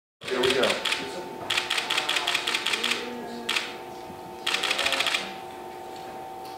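Rapid runs of sharp clicks in several bursts of about a second each, over a steady hum.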